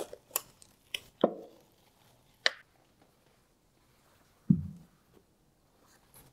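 Handling of plastic mixing cups and a jar of black epoxy tint: a few scattered clicks and taps in the first two and a half seconds, then a single soft thump about four and a half seconds in.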